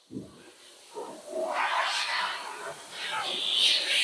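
A soft hissing rush that swells up about a second and a half in and again near the end.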